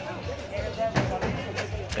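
Background talk from several people, with music faintly under it and a few short knocks.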